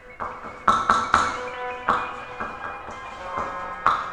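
Amplified electric guitar played with a glass tube pressed across the strings. It gives a series of about seven sharp, irregular strikes, and each strike rings on in several overlapping tones. The loudest come about a second in and near the end.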